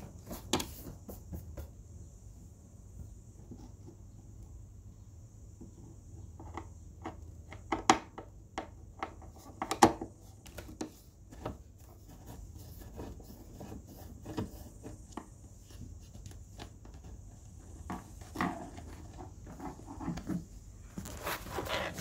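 A Phillips screwdriver working a screw out of a subwoofer cabinet: scattered small clicks, scrapes and knocks of the tool on the screw and panel. The two sharpest knocks come about 8 and 10 seconds in.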